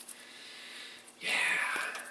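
A man says a breathy, whispered "yeah" about a second in, after faint room hiss.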